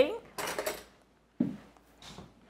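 A voice trailing off, then a couple of short, soft clinks and scrapes from a metal spoon in a ceramic bowl of curry, with brief silences between.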